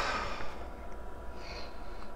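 A nasal breath fades out over the first half second, and a softer one comes about one and a half seconds in, over a steady low electrical hum from the bench equipment.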